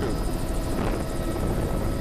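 Helicopter cabin noise: the steady drone of the rotor and engine heard from inside a low-flying helicopter.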